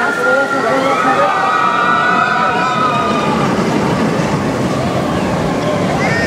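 Expedition Everest roller coaster train rumbling along its track, with several riders screaming together in long, wavering cries for the first three seconds or so.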